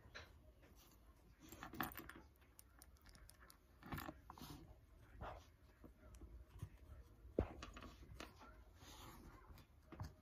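Faint, scattered crackles and soft clicks of macaroon clay being squeezed and pressed between the fingers, with one sharper click about seven seconds in.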